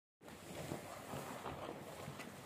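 Sugarcane juice boiling and bubbling in a wide iron jaggery pan, a steady crackle of small pops, with a ladle stirring through the foam.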